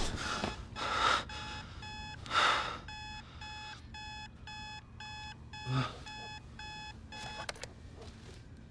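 Bedside digital alarm clock beeping in a steady train of short, high electronic beeps, about two a second, that stop shortly before the end. Three brief louder noisy swells break in among the beeps.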